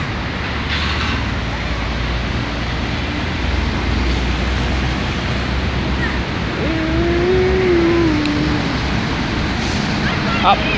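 Steady outdoor noise haze with a low rumble. About seven seconds in, a drawn-out voiced sound lasts about two seconds, rising a little and then falling in pitch.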